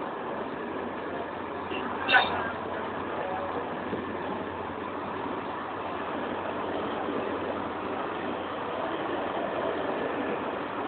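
Passenger train coaches rolling past close by: a steady rumble and rush of wheels on rail, with one brief sharp sound about two seconds in.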